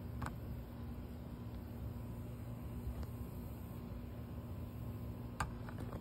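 Steady low rumble with a faint hum, broken by a light click about a quarter second in and a few quick clicks near the end.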